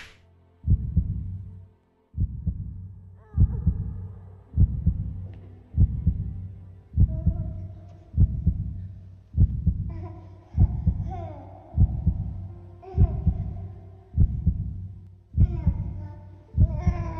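Heartbeat sound effect: slow, steady low thuds about every second and a bit, starting just under a second in. Soft music with sustained tones comes in underneath a few seconds in and grows fuller toward the end.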